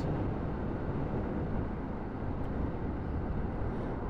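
Steady wind rush and engine drone on a helmet-mounted microphone while riding a 125 cc motorbike on the road, even throughout with no distinct events.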